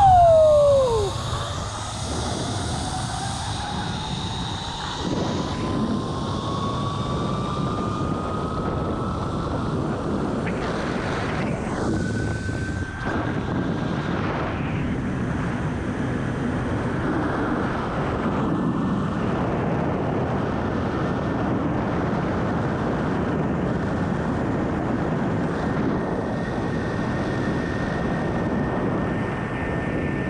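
Zip line trolley pulleys running along the steel cable under a rider's weight, a thin whine that rises in pitch as he picks up speed over the first dozen seconds and then holds steady, over a loud rush of wind on the camera's microphone. It opens with a brief loud falling tone.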